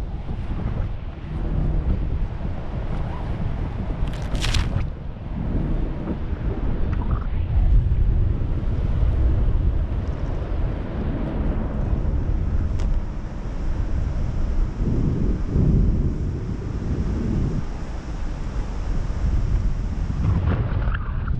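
Wind buffeting the camera microphone: an uneven, rumbling rush of air, with a brief sharp hiss about four and a half seconds in.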